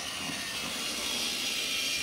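Battery-powered TrackMaster toy diesel engine whirring steadily as its motor drives it along plastic track, a high, even whir that grows slightly louder.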